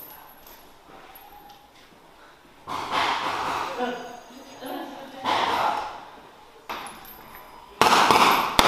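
Indistinct voices and movement, then near the end a sudden loud run of rifle shots.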